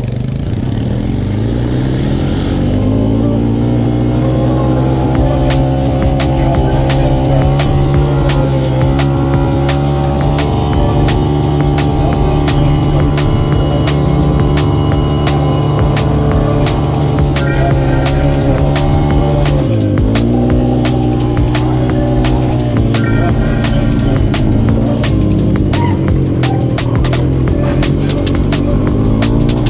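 ATV engine accelerating and then running steadily at speed, dropping off and picking up again about twenty seconds in, with electronic music with a fast beat playing over it.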